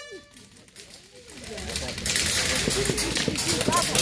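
An air horn blast cuts off at the start. After a short lull, rapid sharp clicking of airsoft guns firing sets in about two seconds in, with faint voices underneath.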